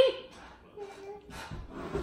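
Speech: a woman's spoken question ending right at the start, then faint voices and soft noise at a low level.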